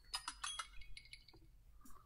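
Several quick, light clinks of small hard objects, each with a short high ring, bunched in the first second or so and then fading out.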